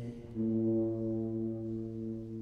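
Tuba playing a long held low note in a concerto, entering about a third of a second in after a brief break and slowly fading.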